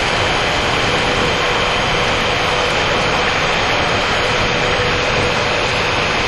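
Loud, steady rushing noise, unbroken and without rhythm, with a faint steady hum running through it.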